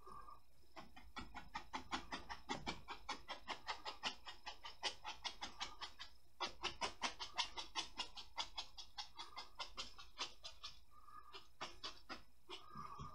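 Stiff bristle paintbrush tapping oil paint onto a stretched canvas in quick repeated dabs, about four a second, with a short break about six seconds in and sparser dabs near the end.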